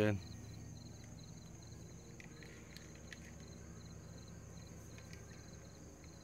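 Faint, steady outdoor background of a cricket chirping in a quick regular rhythm, a few chirps a second, over a low hum, with a few light clicks.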